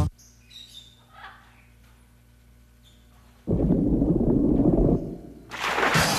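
Faint bird chirps over a quiet background, then about three and a half seconds in a loud low animal growl lasting over a second, followed near the end by a loud hiss.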